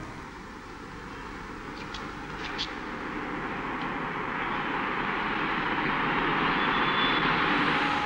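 A steady rushing roar that swells gradually louder, with a few faint clicks about two seconds in.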